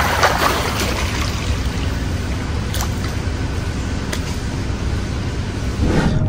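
Water running steadily in a continuous rushing haze, with a couple of faint clicks in the middle.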